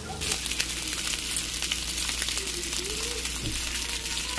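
Spice-coated red snapper pieces shallow-frying in hot oil, with a steady sizzle full of small crackles and pops that starts abruptly just after the opening.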